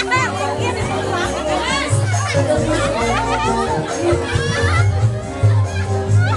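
Amplified dance music with a pulsing bass beat, a woman singing over it through a microphone, and voices and shouts from the dancing crowd.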